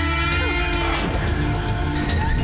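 Tense drama background score with steady held low tones and a brief sliding tone about half a second to a second in.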